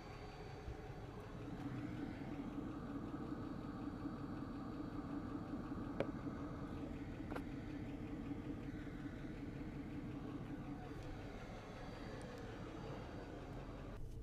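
Vehicle engine idling steadily, with a sharp click about six seconds in and a fainter one a second and a half later.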